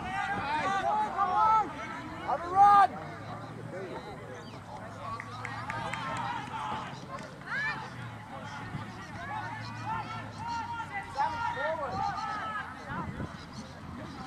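Players and spectators shouting and calling across an outdoor rugby pitch, voices carrying at a distance with no clear words; one loud shout about three seconds in.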